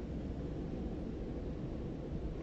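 Steady, low, dull background noise with no voices, slowed to half speed.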